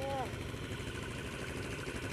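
Yamaha Grizzly 660 quad (ATV) engine idling steadily.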